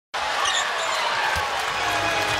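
Basketball being dribbled on a hardwood court over the steady murmur of an arena crowd.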